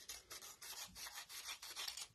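Sheets of printer paper rustling faintly as they are handled, a quick run of light crinkles, while a strip is being separated from a sheet.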